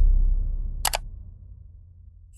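End-screen sound effects: a deep boom fades away, and a short, sharp click like a camera shutter sounds a little under a second in, as the animated cursor clicks the subscribe button.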